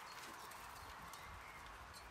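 Faint scraping and light taps of a trowel working wet cement, over a low, steady outdoor background.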